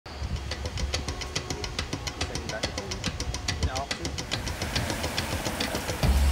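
Street ambience: a low steady rumble of traffic under a rapid run of sharp clicks, about seven a second.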